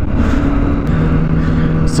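Kawasaki ZX-10R inline-four engine running at a steady cruise, with a steady engine note under heavy wind and road rush on the microphone.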